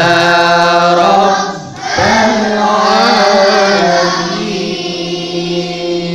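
A group of children reciting Quranic verses together in a melodic tilawah style. It comes in two long, held phrases with a short breath between, and the pitch of the second phrase wavers up and down in ornaments.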